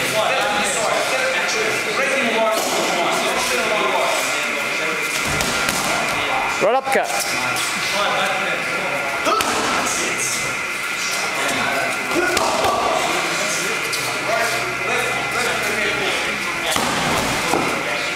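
Boxing gloves landing punches during sparring: a running series of sharp slaps and thuds, with a short shout about seven seconds in.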